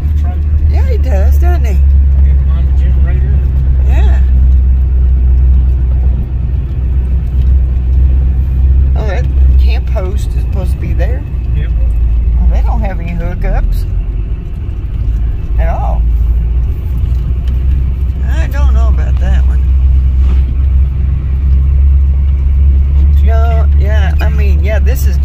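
Steady low rumble of a car's engine and tyres, heard from inside the cabin as it drives slowly along a paved road.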